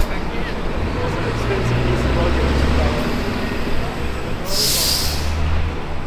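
City street traffic: a heavy vehicle's engine rumbling low and steady, with a short, loud hiss about four and a half seconds in.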